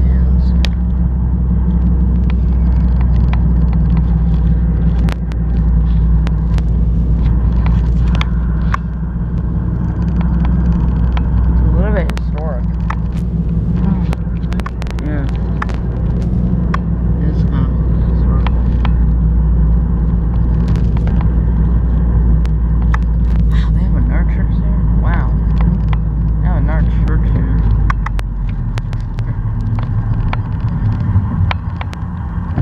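Car interior noise while driving: a steady low drone of engine and tyres on the road, with scattered sharp clicks.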